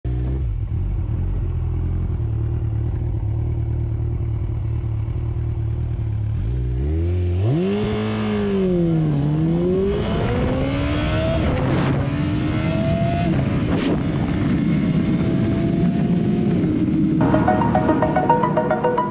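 Kawasaki ZX14R's inline-four through an Akrapovic exhaust, recorded from a helmet camera: a low, steady engine note for about seven seconds, then full-throttle acceleration, the pitch climbing through the gears and breaking sharply at each of several upshifts. Electronic music comes in near the end.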